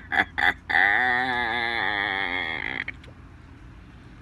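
A man's short burst of laughter, then a drawn-out, wavering vocal cry lasting about two seconds.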